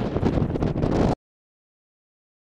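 Strong storm wind buffeting the camera microphone, a rough, gusty noise heavy in the low end, which cuts off abruptly to silence just over a second in.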